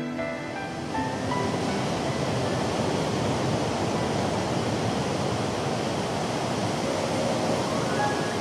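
Steady rushing wash of sea water and waves, rising in about a second in as soft background music fades beneath it.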